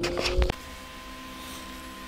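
Wind buffeting the microphone with a couple of sharp clicks, cut off suddenly about half a second in. Then quiet indoor room tone with a faint steady electrical hum and a thin high tone.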